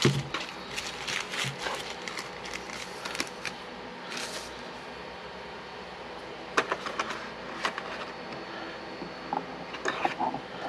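Hands handling a small lens, a cloth and plastic miniatures on a tabletop: scattered light clicks, taps and rustles, busiest in the first couple of seconds, with a short rustle around the middle and a few sharper clicks later on.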